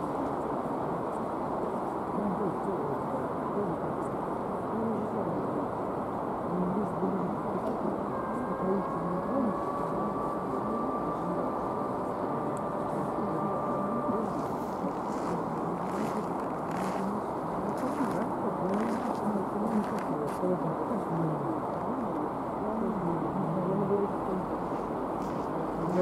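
Voices talking almost without pause over the low, steady running noise of an ES1P Lastochka-Premium electric train pulling slowly into the platform. A thin steady whine comes in for several seconds midway, and a few light clicks follow.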